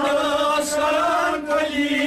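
Men singing a Kashmiri Sufi devotional song in a chant-like group refrain over harmonium accompaniment, the voices holding long notes with a short break about a second and a half in.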